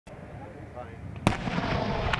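A single explosion about a second in: a sudden sharp crack, then a rumble that carries on afterwards.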